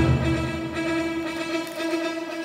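Orchestral music played through an LG BH7220B 5.1 home theater speaker system: a sustained, horn-like chord as the low boom of a drum hit dies away.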